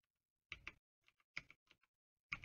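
Computer keyboard keystrokes: a handful of quick key presses in two short clusters as a password is typed.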